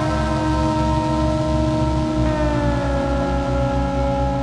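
Experimental electronic music: a held synthesizer chord over a low pulsing drone, with a tone that slides slowly downward in pitch a little past halfway.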